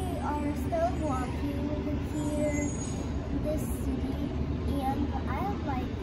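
A young girl speaking in Russian over a steady low background rumble.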